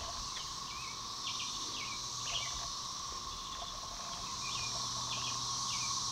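Steady, even drone of a Brood XIX periodical cicada chorus, with short bird chirps scattered through it.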